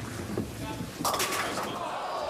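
A bowling ball hits the pins about a second in with a sudden clattering crash, followed by rattling pin noise and crowd voices.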